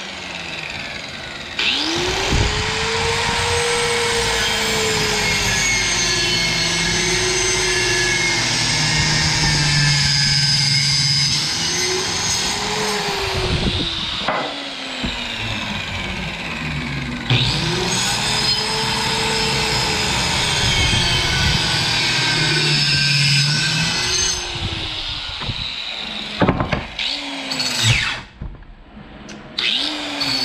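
A handheld electric circular saw cuts through a wooden slat in two long passes, the first about twelve seconds and the second about seven. The motor pitch rises as it spins up and then dips and wavers as the blade bites the wood. A few short bursts of the saw follow near the end.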